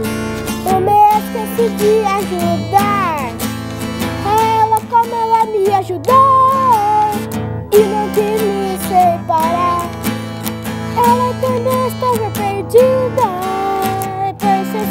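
Acoustic guitar strummed steadily, with a young boy singing over it.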